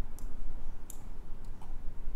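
Three light, sharp computer mouse clicks, spaced about two-thirds of a second apart, over a low steady hum.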